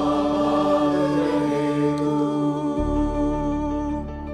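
A mixed choir singing one long held chord in several voice parts, with a low accompaniment underneath that drops away and comes back about three seconds in.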